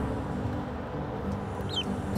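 A duckling gives one short, high peep near the end, over the steady low rumble of a car in motion.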